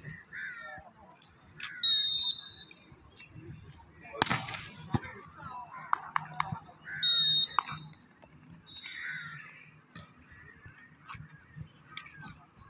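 Referee's whistle blown twice, short sharp blasts about two and seven seconds in, with a single hard ball strike about four seconds in and scattered shouts from players in between.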